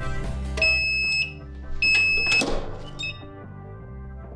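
A Starcraft clamshell heat press's timer beeping twice, two steady high beeps each about half a second long, marking the end of the 15-second press. A short rush of noise follows as the press is opened. Background music plays throughout.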